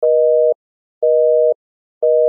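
Telephone busy signal: two steady tones sounding together, beeping twice for half a second each with half-second gaps.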